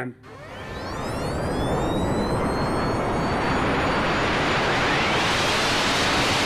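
A whooshing outro sound effect, like a jet engine rushing past: a swell of noise that builds over the first second or two and then holds, with faint gliding whistle-like tones running through it.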